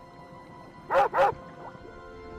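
Two short dog-like barks in quick succession about a second in, the creature's call for the hand-animal on screen, over soft background music.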